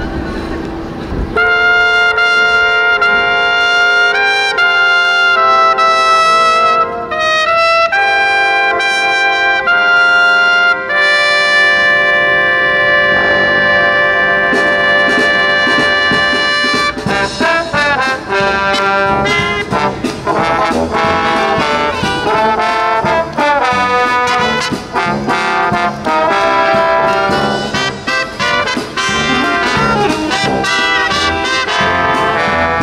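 Marching band playing a Christmas medley, with trumpet in front: it starts about a second in with long held notes, and from a little past halfway the band plays busier, quickly moving passages.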